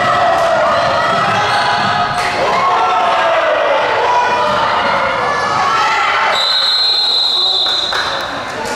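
Basketball game in a gym: the ball bouncing on the hardwood court amid echoing voices from players and spectators. About six seconds in, a referee's whistle blows one steady blast for well over a second.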